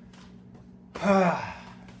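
A man's voiced sigh about a second in, falling in pitch and breathy.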